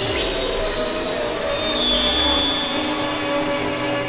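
Experimental electronic synthesizer music: a dense, noisy drone with layered held tones, a quick downward sweep at the very start and a high rising-then-falling glide about halfway through.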